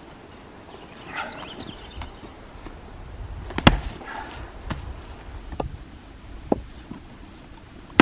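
Splitting axe driven into a round of green birch firewood: one sharp chop a little under halfway through, then a few lighter knocks, and another strike right at the end.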